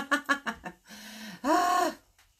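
A woman laughing in quick bursts, followed by a short hum and then a loud, drawn-out voiced sound that rises and falls in pitch near the end.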